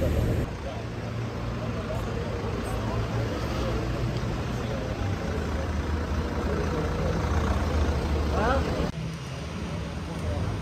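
Street ambience: a steady low traffic rumble with faint voices. The background changes abruptly about half a second in and again near the end, where the shots are cut.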